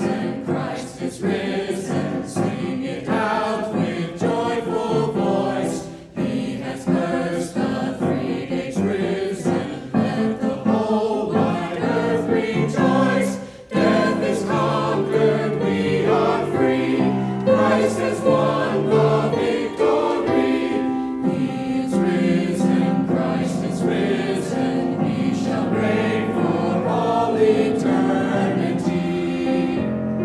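Mixed church choir of men's and women's voices singing an anthem in parts, with two short breaks between phrases, about six and thirteen seconds in.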